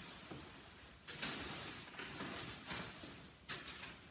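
Faint rustling of disposable plastic shoe covers and a protective coverall as the shoe covers are pulled off the feet, in about five short bursts.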